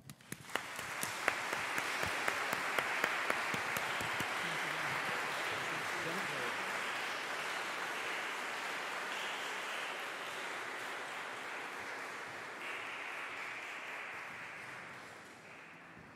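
Audience applauding in a large, reverberant church. The applause starts just as the thanks end, is loudest in the first few seconds, and fades out near the end.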